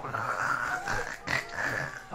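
A man making a low, throaty noise of disgust after tasting something he dislikes, mixed with laughter.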